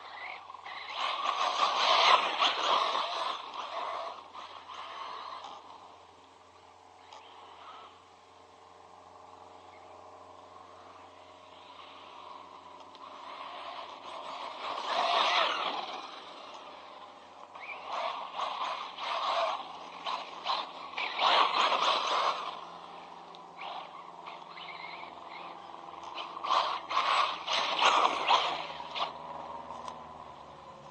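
Electric ZD Racing Pirates 2 MT8 RC monster truck driving over loose dirt in four bursts of throttle, with quieter lulls between. Its drivetrain and tyres churn with a rough, raspy noise.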